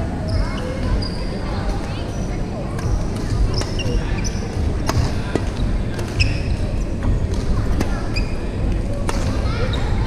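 Busy indoor sports hall during badminton play: short high squeaks of sneakers on the wooden court floor and scattered sharp clicks of rackets striking shuttlecocks, over a steady low hall rumble and distant voices, all echoing in the large hall.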